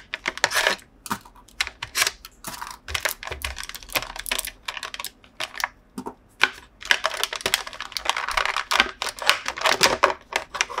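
A stiff clear plastic blister tray crackling and clicking as it is flexed and an action figure and its small plastic accessories are pried out of it. The sound is a fast, irregular run of sharp snaps and crinkles, busiest in the second half.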